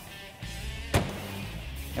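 Ford Mustang trunk lid slammed shut, a single sharp bang about a second in, over quiet background music.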